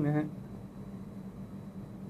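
A man says a short word at the start, followed by a steady low background hum with no other distinct sound.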